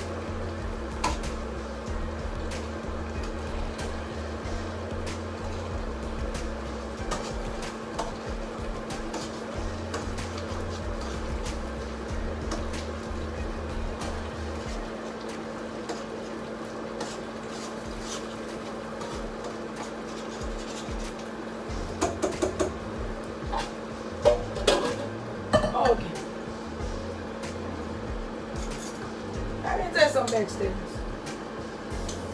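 Metal pots and utensils clanking, in a quick cluster a little past the middle. Under them runs a steady hum, with background music whose low bass line moves in steps.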